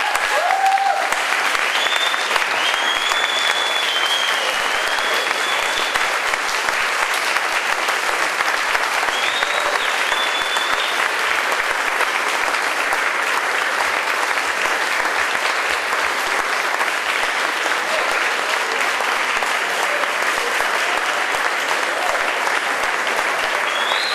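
Audience applauding loudly and steadily, with some cheering voices rising over it in the first few seconds and again around ten seconds in.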